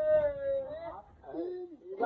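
A long, drawn-out call held on one pitch and falling slightly at its end, then a shorter, lower call that bends up and down.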